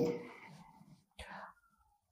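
A man's speech trailing off in the first half-second, then near silence with one faint, brief sound a little past the middle.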